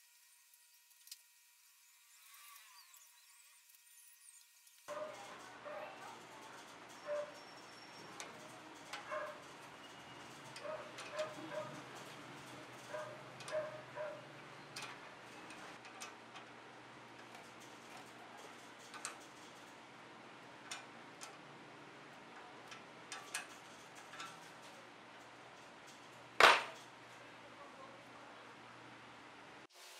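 Near silence for the first few seconds, then scattered small metallic clicks and taps from hand work on a steel cable, its clamp and locking pliers on a rebar cage, with one much louder sharp knock near the end.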